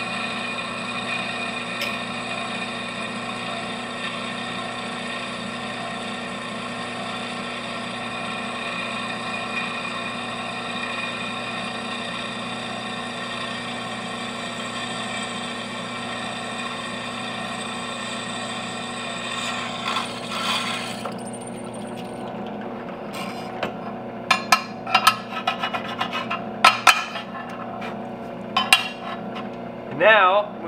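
Drill press motor running steadily while the bit cuts a hole through a brass knife-guard bar. About twenty seconds in the cutting stops and the motor keeps running under a run of sharp clicks and knocks as the bar is handled on the table.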